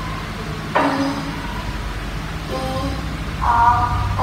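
A child's voice spelling out letters one at a time in short, separate sounds with pauses between them, over a steady low hum.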